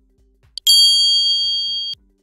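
Subscribe-button animation sound effect: a short click, then a bright bell ding that rings steadily for over a second and cuts off suddenly.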